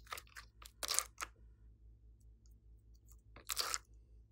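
Soft, sticky strips of clay peeled out of a flexible silicone mould and handled: a quick run of crackly, sticky rustles in the first second or so, loudest about a second in, then one longer crackle near the end.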